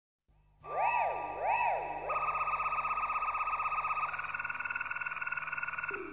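Electronic synthesizer tones starting about half a second in: two siren-like rising and falling pitch sweeps, then a steady, rapidly pulsing tone that steps up to a higher held tone about four seconds in.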